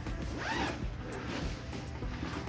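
Zipper on a fabric Aputure softbox carrying bag being pulled open along the bag.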